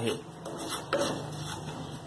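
Wooden spatula stirring and scraping semolina across a nonstick frying pan in irregular strokes, as the semolina is roasted in a little oil over a low flame.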